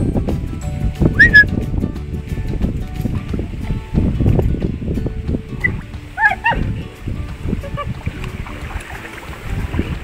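Water sloshing and splashing around a Neapolitan Mastiff wading in the shallows, with uneven low rumbling noise throughout. Short pitched calls come about a second in and again about six seconds in.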